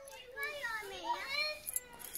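A young child's high-pitched voice calling out, its pitch swooping up and down, without clear words.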